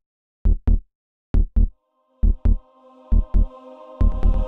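Soundtrack heartbeat: paired low thumps in a lub-dub rhythm, about one pair a second and slowing. A sustained synth chord swells in from about halfway.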